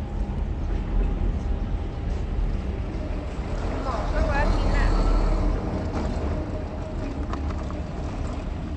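Steady low rumble of wind buffeting the microphone outdoors, with a brief high-pitched warbling sound about four seconds in.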